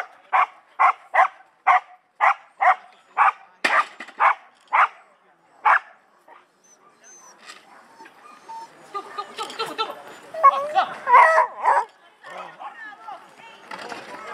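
A dog barking repeatedly and excitedly during an agility run, about a dozen barks at roughly two a second, stopping about six seconds in; after that, people's voices.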